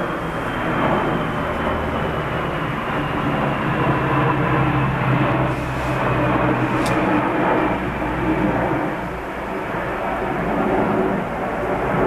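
A loud, steady engine drone with a low hum and a faint high whine that falls slowly in pitch, like an aircraft passing overhead.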